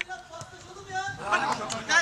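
A man's voice speaking in short phrases, with pauses between them.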